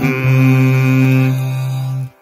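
Programme bumper jingle: chant-like sung music that settles into one long held note.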